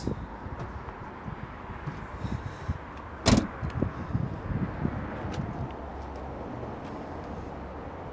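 2011 Nissan X-Trail's tailgate shut about three seconds in: one sharp, loud thud, with a few softer knocks after it over a steady outdoor background.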